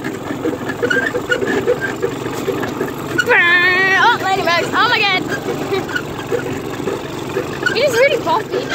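Go-kart engine running as the kart drives over bumpy ground. From about three to five seconds in, a person's drawn-out voice wavers and shakes with the bumps.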